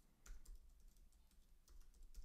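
Faint typing on a computer keyboard: a few scattered, quiet keystrokes.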